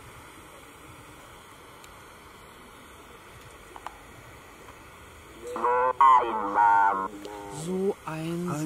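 A steady faint electronic hiss, then about five and a half seconds in a loud synthetic voice from a ghost-hunting word device speaks the words "so einsam".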